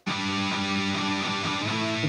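Distorted electric rhythm guitar, played through an amp simulator with no other instruments. It comes in abruptly with a held chord and moves to another chord near the end.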